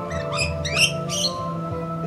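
Background music playing steadily, with several short, high-pitched squeaky calls from feeding rainbow lorikeets over it in the first second and a half.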